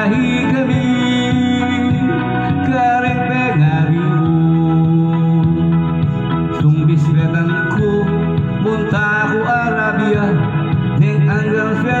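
Karaoke backing track with organ-like electronic keyboard tones and a steady beat, with a man singing into a microphone over it at times.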